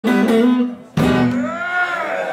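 Amplified acoustic guitar played live: notes ring, then a sharp strum comes about a second in. A sung note follows, bending up and back down in pitch.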